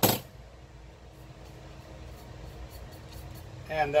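A short, sharp click of a small spice jar being handled right at the start, followed by quiet room tone with a faint steady hum.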